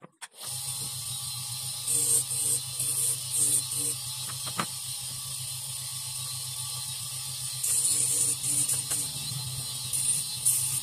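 A small electric motor running with a steady hum that starts suddenly just after the start, with louder spells of a rattling hiss about two to four seconds in and again near the end, and a single sharp click near the middle.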